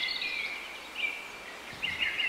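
Birds chirping and twittering, many short quick calls overlapping, busiest at the start and again near the end with a thinner stretch in between.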